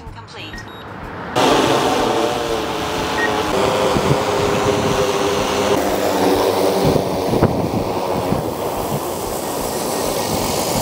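DJI M350 quadcopter's propellers running as it comes down to land: a steady hum made of several pitched tones that waver slightly, starting suddenly about a second and a half in. A single sharp knock comes about seven and a half seconds in.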